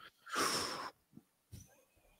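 A man's short breath out into a close podcast microphone, lasting about half a second.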